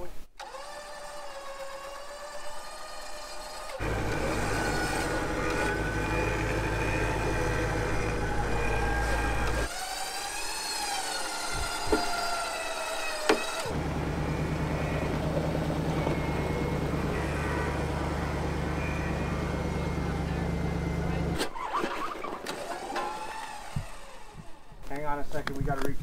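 Vehicle engines running under load during a winch pull up a frozen slope. The stuck Jeep Cherokee is in four-low and the recovery rig drives forward on the line. The engine sound comes and goes abruptly several times, with a wavering higher whine over it and a brief voice near the end.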